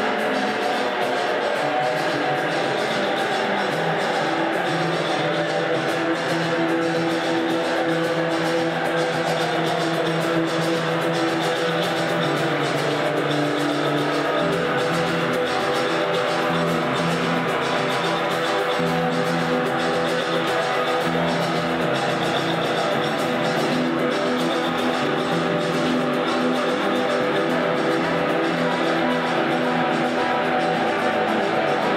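Live rock band playing, with electric guitar and four-string electric bass. Deeper bass notes come in about halfway through.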